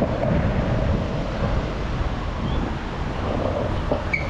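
Steady low noise of wind on the microphone mixed with cars passing on the street.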